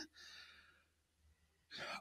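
A soft breath into the microphone just after speech stops, then near silence, then a quick inhale near the end.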